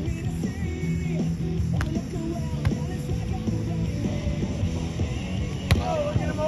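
Background music with sustained low notes. Three sharp smacks cut through it, about two, three and six seconds in: a volleyball being struck by hand.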